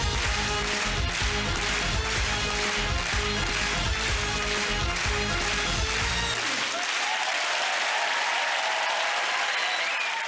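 Studio audience applauding over the show's closing theme music. About six seconds in, the music's bass drops away while the applause carries on.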